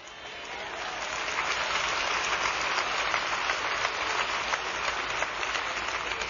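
Congregation applauding in a large hall, building up over the first second or so and then holding steady.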